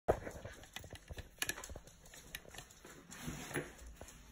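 A French bulldog puppy's claws clicking and tapping on a hard floor, in irregular light clicks as it scrambles about.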